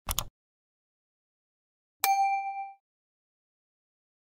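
Subscribe-button animation sound effects: a short mouse click right at the start, then a single bright bell ding about two seconds in that rings briefly and fades.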